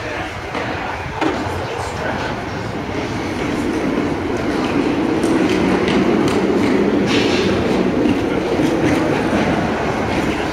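Rumble of a passing vehicle, building up from about three seconds in and then staying steady and loud.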